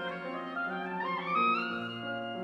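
Flute, oboe and piano trio playing: a quick run rises from about half a second in to a high held note near the end, over sustained low piano notes.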